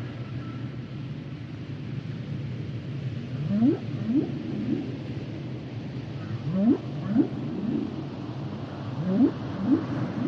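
Humpback whale song heard underwater. A steady low rumble runs under it, and from about three seconds in, short rising whoops come in groups of two or three, roughly every three seconds.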